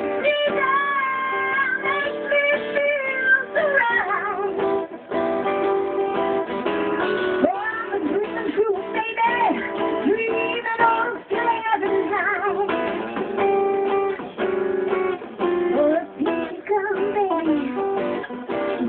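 Live band music: a woman singing into a handheld microphone over a strummed acoustic guitar.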